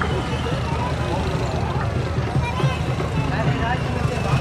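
Crowd of many men's voices talking and calling over one another, with a steady low rumble underneath.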